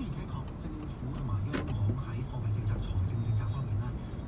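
Inside a car crawling through city traffic: a low engine and road hum under faint talk, with a sharp click about a second and a half in.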